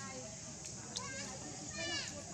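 Background of high-pitched voices calling and chattering, with a short falling call near the end and a brief click about a second in.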